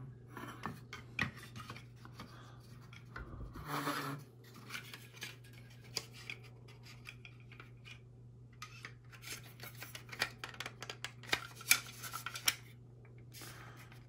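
Hard plastic model-kit parts of a Saturn V rocket clicking and rubbing as they are handled and fitted together, with a busier run of sharper clicks near the end.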